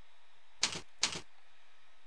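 Two keystrokes on a computer keyboard, about half a second apart, over a steady faint hiss.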